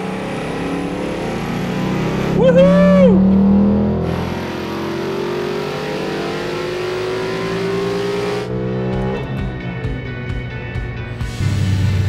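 2018 Ford Mustang GT's 5.0-litre Coyote V8, running on E85, making a wide-open-throttle pull on a chassis dyno, its pitch rising as the revs climb. The throttle closes about eight and a half seconds in, and the engine and rollers wind down.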